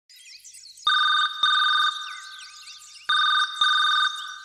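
Telephone ringing in the double-ring pattern: two 'ring-ring' pairs, the second starting about three seconds in. Faint high chirping sounds underneath.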